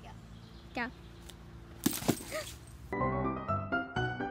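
A person's short pitched voice sounds near the start, two sharp knocks come about two seconds in, and background music with distinct stepped notes starts about three seconds in.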